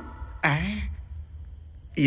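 Crickets chirring in one steady, high-pitched trill: a night-time background.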